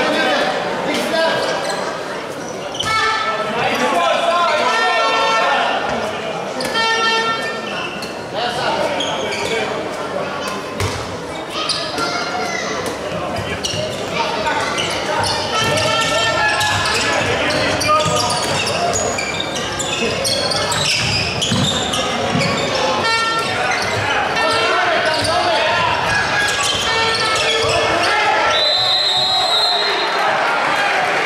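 Handball match sound in a large, echoing sports hall: the ball bouncing on the wooden court and players calling out. Near the end, a short, steady high tone sounds, matching a referee's whistle.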